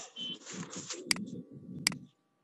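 Two sharp computer-mouse clicks about three-quarters of a second apart, over a low background rumble from an open call microphone.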